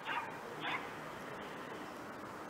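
A dog barking twice, about half a second apart, two short calls over steady background noise.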